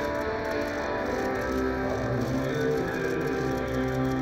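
Music with guitar, long held notes over a steady low bass.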